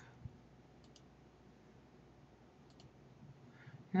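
Faint computer mouse clicks: a pair of short clicks about a second in and another pair near three seconds, with a soft thump just after the start, over low room hiss.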